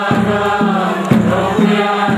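A large crowd singing together, with a steady low beat about twice a second under the voices.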